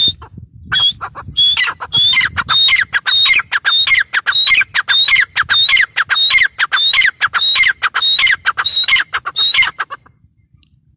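Gray francolin calling: a fast run of loud, shrill notes, about two a second, each a high note that drops sharply in pitch. The series starts about a second in after one lone note and stops abruptly near the end.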